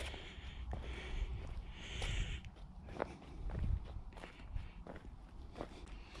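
Footsteps of shoes on gritty sandstone slickrock at an unhurried walking pace: irregular soft scuffs and sharp little clicks.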